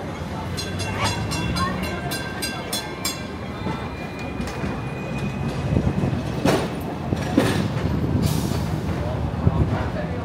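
Hong Kong double-decker tram running on its street rails, heard from on board: a quick run of ringing metallic clicks in the first few seconds, a thin steady squeal, then two sharp loud clanks past the middle and a short hiss near the end.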